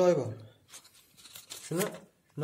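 A man's voice at the start and again briefly near the end. Between them, faint scratchy handling noise of hands moving an IDE optical drive and its ribbon cable.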